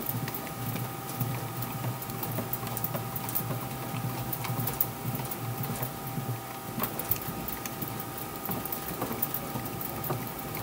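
A baseball bat turning between the rollers of a bat rolling machine during a hand-cranked heat roll: a steady hum with a faint whine, and scattered irregular light clicks as the bat is pressed and turned.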